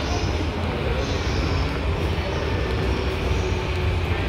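Railway station concourse ambience: a steady low rumble under an even background hubbub.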